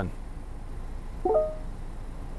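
Ford SYNC 3 voice-control chime: one short electronic chime of a few stacked tones about a second in. It is the system's acknowledgement of a spoken radio-station command in advanced mode, which gives no spoken confirmation.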